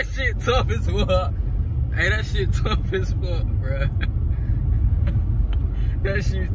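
Steady low rumble of a running car heard from inside its cabin, with a man's voice over it near the start and again about two seconds in.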